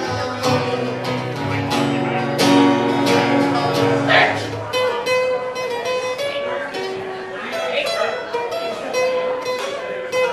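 Acoustic guitar being strummed, with full, low-ringing chords for the first four seconds or so, then lighter, thinner playing after that.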